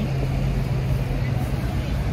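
City street traffic: a steady low hum over a low rumble.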